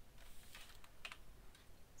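A few faint clicks of a computer keyboard and mouse.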